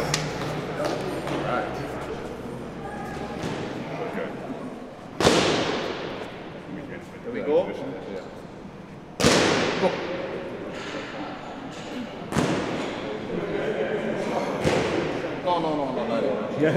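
Three loud, sharp thuds, the first about five seconds in and the others about four and three seconds later, each with a short ringing tail in a large room, over a murmur of background voices.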